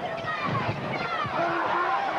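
Speech: a television basketball commentator talking over steady arena background noise.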